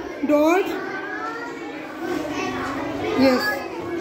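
Young children's voices calling out, high-pitched and with no clear words, followed by a spoken 'yes' near the end.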